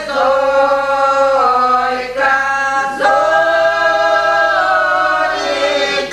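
A small group of elderly village women singing a traditional Russian folk song unaccompanied, in long held notes, with a short break for breath about two seconds in and again at three.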